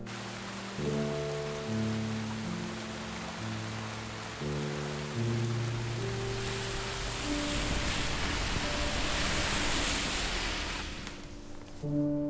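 Heavy rain falling, with slow soundtrack music of long held notes underneath. The rain grows louder in the second half and cuts off abruptly near the end.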